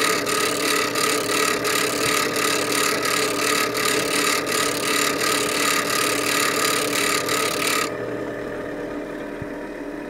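Bench grinder running while a steel chisel's bevel is ground against the wheel at a low 17-degree angle: a steady hiss of grinding over the motor's hum. About eight seconds in the grinding hiss cuts off suddenly as the chisel is lifted off the wheel, and the grinder's motor runs on alone.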